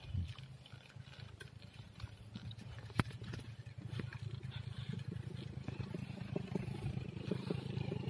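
Wind rumbling on a phone microphone with the road noise of a bicycle being ridden on a concrete road, sprinkled with small rattles and clicks and one sharp click about three seconds in; the noise grows slightly louder toward the end.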